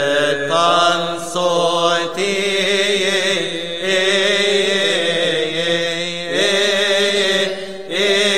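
Male voices singing a Coptic Orthodox liturgical chant in long, drawn-out notes that bend and waver, with short pauses for breath every couple of seconds.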